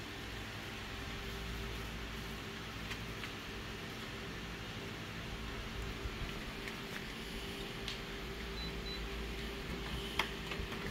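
Steady hum of an office photocopier's fans running at idle, with a faint steady tone in it, and a few soft clicks and rustles of a paper sheet being handled.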